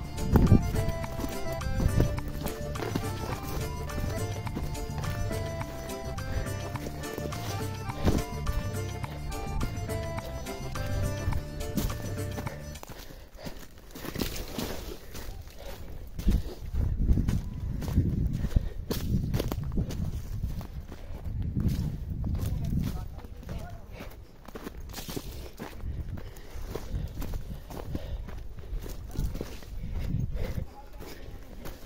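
Music with a steady beat for about the first thirteen seconds, then it cuts off. After that come uneven thuds of a horse's hooves and rustling of dry scrub brush as the horse moves through the bush.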